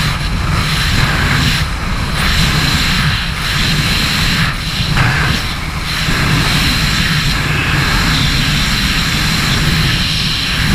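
Loud, steady wind rush on the camera's microphone in wingsuit freefall: a heavy low buffeting rumble, with a steady high whine over it.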